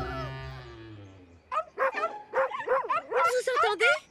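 A cartoon puppy voice giving a run of short yips and whines that bend up and down in pitch, starting about a second and a half in. Before that, a ringing pitched sound fades away.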